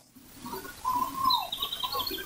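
Birds calling: one drawn-out call that drops in pitch at its end, with shorter calls around it, then a quick run of high twittering notes in the second half.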